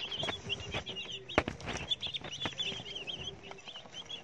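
A brood of day-old white broiler chicks peeping continuously in short, high chirps. A single sharp click sounds about a second and a half in.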